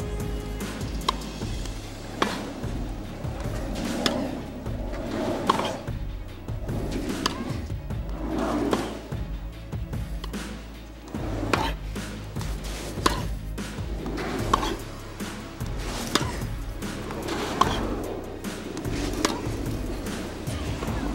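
Tennis ball struck back and forth with rackets in a long baseline rally, a sharp pock about every second and a half, over background music.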